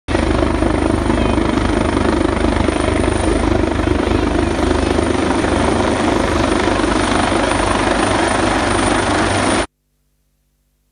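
Helicopter rotor and engine noise, loud and steady with a fast low beat, cutting off abruptly near the end.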